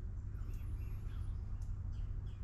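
Steady low background rumble with faint, high, wavering bird chirps in the distance.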